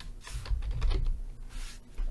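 Typing on a computer keyboard: several keystrokes, each a short burst.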